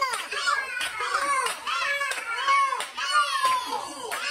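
High-pitched voices, like children's, calling out in repeated rising-and-falling cries, over sharp claps at a roughly even beat.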